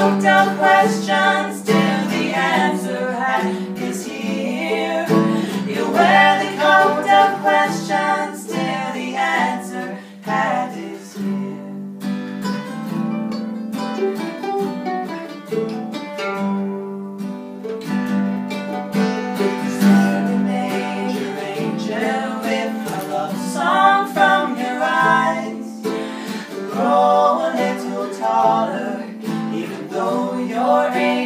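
A mandolin and an acoustic guitar playing an instrumental break in an acoustic folk song, the mandolin carrying a picked melody over strummed guitar chords.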